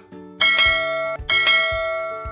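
Notification-bell sound effect ringing twice, about a second apart, each strike bright and slowly fading, over background music.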